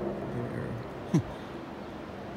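Low, steady drone of a distant helicopter, with one spoken word about a second in.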